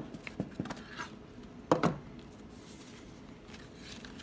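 Paper and cardboard being handled as a booklet and papers are lifted out of a knife's presentation box: a few soft clicks and taps, with one louder knock and rustle a little under two seconds in.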